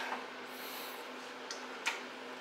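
Steady hiss of a garage space heater running, with two light metal clicks near the end as a dial indicator on its stand is handled and set against the differential.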